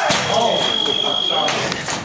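Electric fencing scoring apparatus giving one steady high beep, about a second and a half long, the signal that a touch has registered. A short shout rises over its start.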